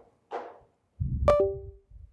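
A dull thump about a second in, with a sharp knock that rings briefly at a clear pitch.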